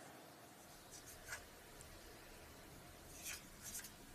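Near silence: room tone, with a few faint soft rustles about a second in and again near the end.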